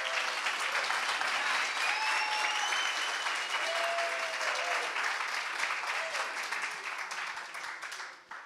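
Audience applauding, with a few voices whooping and calling out over the clapping; the applause dies away near the end.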